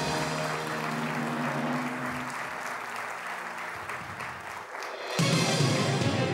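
Studio audience applauding over the game show's correct-answer music, the sign that the locked-in answer was right. About five seconds in, a louder new music cue with a low bass line comes in.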